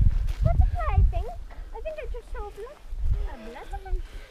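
Distant, unintelligible voices calling in short high-pitched phrases, with wind rumbling on the microphone.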